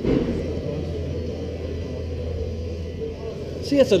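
Indistinct chatter of people talking in a large hall over a steady low rumble, with a short bump at the start. A man's voice begins just before the end.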